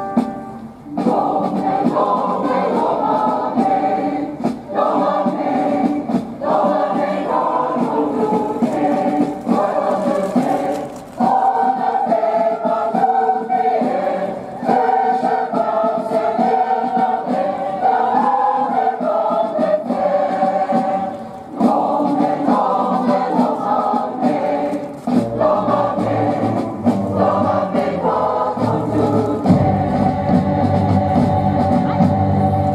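Large mixed choir of men and women singing in long held phrases, with brief pauses for breath between them; deeper notes join in during the last few seconds.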